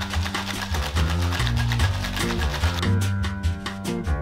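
Ice rattling rapidly inside a metal tin-on-tin cocktail shaker being shaken hard, the rattle dying away about three quarters of the way through, over background music.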